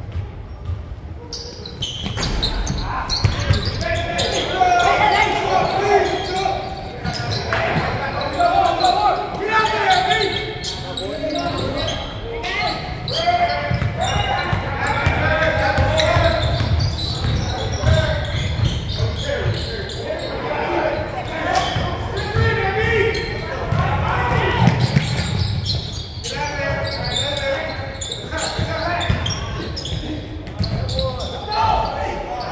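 Basketball being dribbled and bounced on a hardwood gym floor, with indistinct voices of players and spectators calling out across a large gym throughout.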